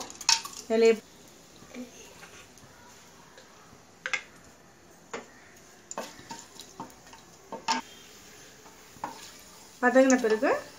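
A spatula stirring whole spices in oil in an aluminium pressure cooker, knocking and scraping against the pot in separate sharp clicks about a second apart.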